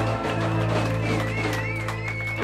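Live band music with electric guitar over a steady held bass note, and a high wavering note coming in about halfway.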